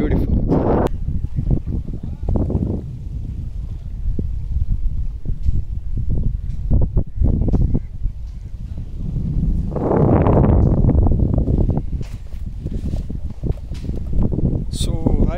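Wind buffeting a smartphone's microphone: a loud low rumble that rises and falls in gusts, with its strongest gust about ten seconds in.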